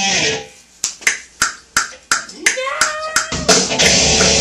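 A run of sharp, evenly spaced clicks, about three a second, with an electric guitar note sliding up and held, then a loud heavy-metal track with distorted electric guitar and drums starts near the end.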